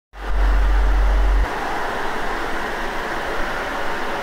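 Water discharging hard from the relief valve of a reduced pressure zone backflow preventer: a steady rushing spray, with a deep rumble under it for the first second and a half. The discharge is the sign that water has got into the zone at a pressure equal to the pressure coming in.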